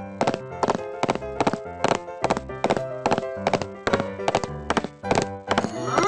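Cartoon footstep sound effects: a steady clip-clop tread of about three knocks a second for the walking elephants, over background music.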